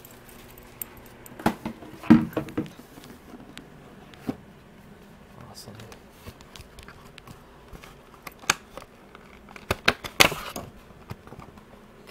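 Cardboard and plastic packaging being handled as a trading card box is opened: scattered rustles and sharp clicks from the lid and plastic insert tray, loudest about two seconds in and again near ten seconds.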